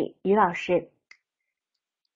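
A woman speaking through the first second, then one short click.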